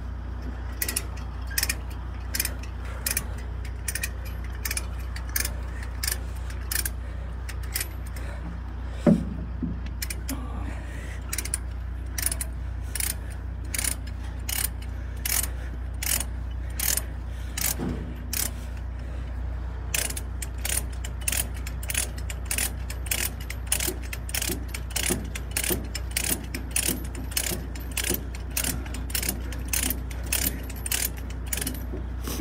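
Ratchet chain load binder being cranked to tension a securing chain, its pawl clicking in a steady rhythm of about two to three clicks a second. There is a brief pause with one louder knock about nine seconds in, and a steady low drone runs underneath.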